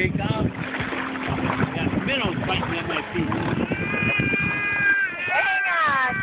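A baby squealing and laughing, with one long high-pitched squeal about four seconds in, amid adults' laughing and excited voices.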